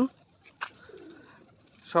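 Faint pigeon cooing, a low falling coo about a second in, after a single sharp click.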